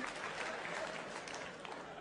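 Theatre audience applauding and laughing after a punchline, the sound thinning out and fading away.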